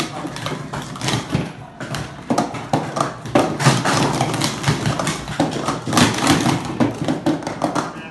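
Plastic sport stacking cups clattering in a rapid, irregular run of clicks and knocks as they are stacked up and down on a stacking mat.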